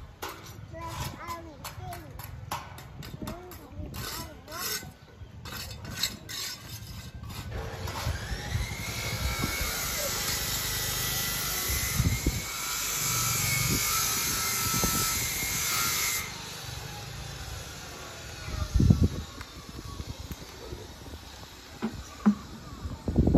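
People's voices with a few knocks, then a steady high-pitched whine over a loud hiss that rises at first, holds for about eight seconds and cuts off suddenly. A couple of thumps follow near the end.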